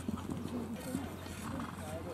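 A horse cantering on a sand arena, its hoofbeats coming as faint irregular thuds, with people talking in the background.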